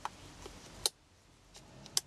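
Small scissors snipping through a stiff shell of dried, glued book paper, with two sharp clicking snips about a second apart and fainter ones between.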